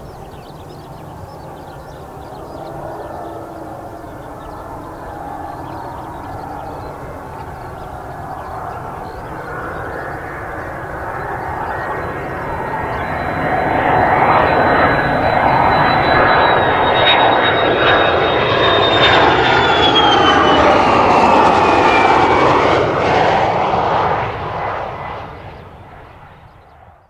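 Mitsubishi F-2B fighter's single F110 turbofan engine on landing approach, growing louder as the jet closes in. A high whine falls in pitch as it passes, and the sound fades quickly near the end.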